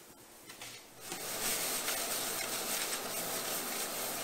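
Dried dill leaves being sifted through a fine mesh strainer onto a metal sheet pan: a steady dry rustling and scratching that starts about a second in.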